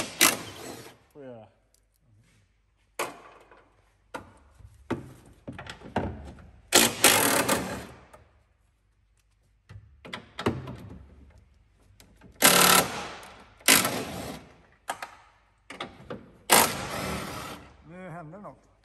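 Cordless 18 V impact wrench hammering in short bursts of about a second, five or six times with pauses between, as it works bolts in a car's body shell.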